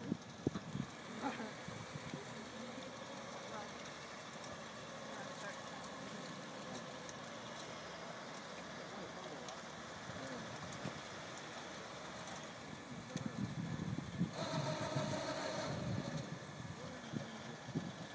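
Open-air ambience with indistinct background voices and some wind on the microphone. About fourteen seconds in, a steady pitched whine with overtones sounds for roughly a second and a half.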